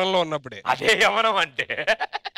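A bleating, voice-like sound in two long calls with a strongly quavering pitch, followed near the end by a run of quick short pulses.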